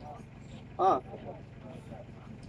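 Speech only: a single short spoken "ah" about a second in, over a low steady hum.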